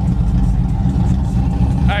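Pontiac Trans Am's LS1 V8 idling with a steady, deep exhaust rumble.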